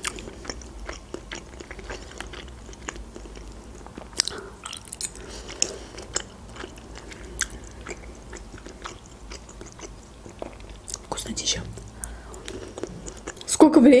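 Close-miked chewing of boiled pelmeni dumplings in cheese sauce: soft wet mouth clicks and smacks, irregular, with a few sharper ones.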